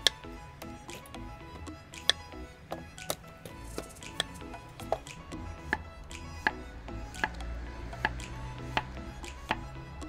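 Masakage Koishi gyuto, a Japanese chef's knife, slicing a zucchini into rounds, each stroke ending in a sharp knock on the wooden cutting board, about one every three-quarters of a second. Background music plays under the cuts.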